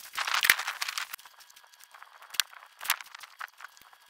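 Hands pushing and spreading lumpy compost into plastic pot trays: a crumbly rustle for about the first second, then a few scattered light clicks.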